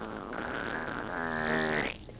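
Long, drawn-out fart sound effect with a wavering pitch, briefly dipping early and cutting off just before the end.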